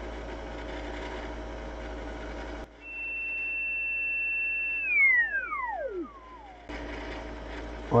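Receiver hiss from a Yaesu FT-101 ham transceiver's speaker gives way, about three seconds in, to a steady high whistle from the 28 MHz signal-generator carrier, with a fainter lower one; the hiss drops away while the whistle is present. After about two seconds the whistle slides steeply down in pitch and fades as the radio is tuned across the signal, and the hiss returns.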